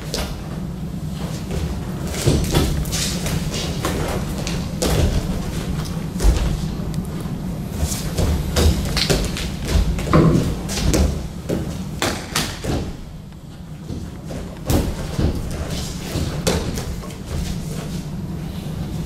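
Feet stamping and shuffling on a padded sports mat and hands slapping against arms and bodies in a two-person kung fu sparring demonstration: an irregular run of thuds and slaps, with a steady low hum underneath.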